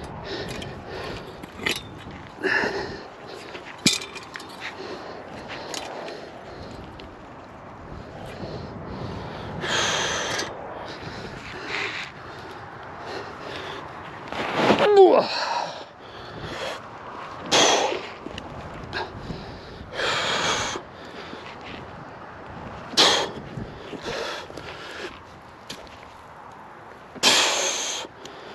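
A man breathing hard in heavy puffs and gasps from the strain of levering a large root out of the ground, with a short grunt about halfway through. Scattered sharp snaps and knocks come from the root and soil.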